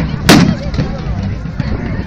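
A single loud shot-like bang about a quarter second in, with a short rumble after it, part of the firing in a staged mock battle. Crowd chatter and noise continue under it.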